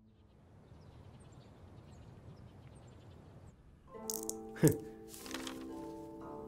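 Faint hiss for the first three and a half seconds, then a short background music cue comes in about four seconds in: several held notes and one loud, sharp hit that falls in pitch, followed by a brief noisy shimmer.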